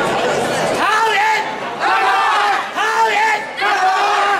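A group of performers chanting a slogan in unison in short rhythmic phrases, starting about a second in after a murmur of crowd chatter.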